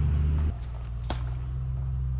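An engine running at a steady idle, a low drone that shifts abruptly about half a second in, with a couple of faint clicks.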